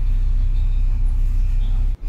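A steady low hum with no speech over it, cutting out briefly at a cut near the end.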